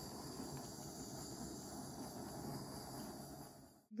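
Small handheld butane torch hissing steadily as it is played over wet acrylic pour paint to bring up cells. The hiss is faint and stops abruptly near the end.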